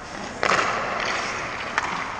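Hockey skate blades scraping the ice: a sudden rasping scrape about half a second in that tails off over the next second, with a faint click near the end.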